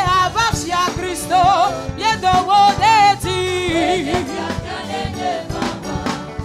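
Live gospel praise music: a woman sings the lead into a microphone, her melody wavering with vibrato, over a band of keyboards, electric guitar and drums keeping a steady beat.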